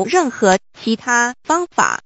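Only speech: a synthesized text-to-speech voice reading aloud in quick, evenly paced phrases.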